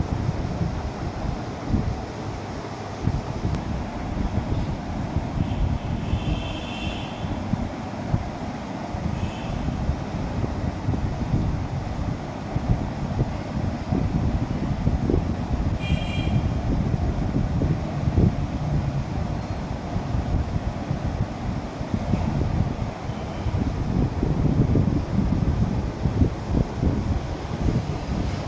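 Low, unsteady rumbling of air buffeting the microphone, continuous throughout, with a couple of brief faint high-pitched tones about six and sixteen seconds in.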